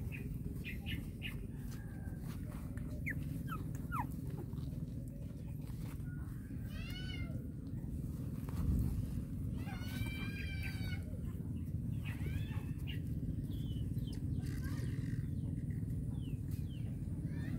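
Newborn puppies whimpering: several short, high-pitched whines scattered over a few seconds, the loudest a little past the middle, over a steady low rumble.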